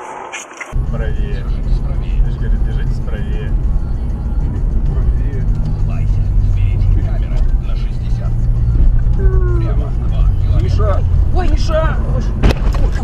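Steady low rumble of a car's engine and tyres heard from inside the cabin, starting abruptly less than a second in. A voice and music sound faintly over it.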